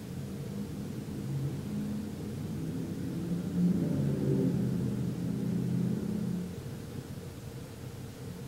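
Low engine rumble of a passing motor vehicle, swelling about three and a half seconds in and fading away after about six seconds.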